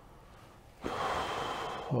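A man's audible in-breath through the mouth, starting about a second in and lasting about a second, taken in a pause in his speech.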